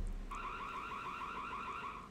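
Electronic burglar alarm warbling, a fast run of repeated chirps about eight a second, cutting off suddenly near the end.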